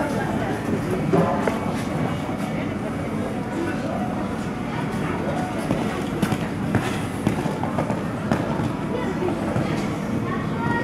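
Noisy indoor arena ambience: indistinct voices in a large hall, with scattered short knocks and ticks.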